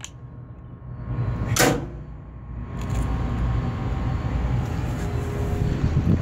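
A single heavy clunk about a second and a half in, typical of a 480 V contactor pulling in or dropping out as the pendant button is pressed. After it comes a steady low hum with faint steady tones.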